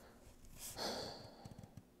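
A man sighs: one breathy exhale starting about half a second in and fading away within about a second.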